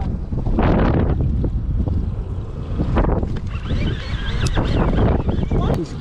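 Wind buffeting the microphone on an open boat at sea, a heavy low rumble that swells and eases in gusts.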